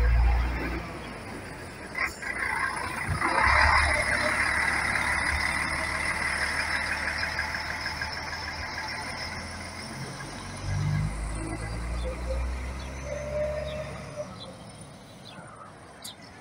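Intercity coach's diesel engine running as the coach pulls away, with a burst of hiss about three seconds in. The sound fades as the coach moves off, with a second swell of low engine noise a little past the middle.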